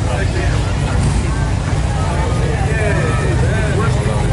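Voices of people chatting in the background over a steady low rumble; no saw is being played.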